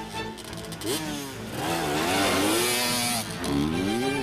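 A motorcycle engine revving up and down in several rising and falling sweeps, loudest with a rushing noise in the middle. Music with held string notes plays underneath.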